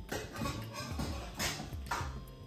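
Background music with a steady bass line.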